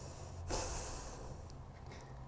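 A single breath into a lapel microphone, a short hiss that starts about half a second in and fades out, over a steady low hum.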